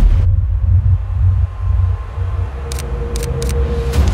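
Deep, steady sound-design rumble, with a thin steady tone coming in about halfway and a few brief ticks near the end.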